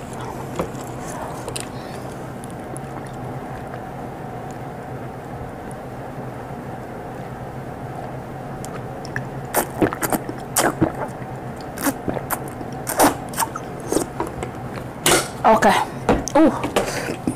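Drinking water from a large plastic water jug through its spout: a run of short gulps and swallows in the second half, over a steady low room hum.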